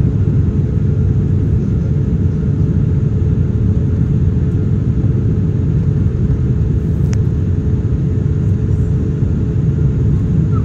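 Steady low rumble of jet engines and rushing air heard inside an airliner cabin during the climb after takeoff, with a faint click about seven seconds in.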